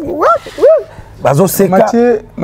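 A man's voice making two short, high vocal swoops that slide up and down in pitch, followed by ordinary speech.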